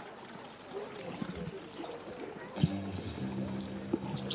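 Hot-spring pool ambience: a steady wash of flowing water with faint distant voices of bathers. A little over halfway through, music with held, sustained tones comes in.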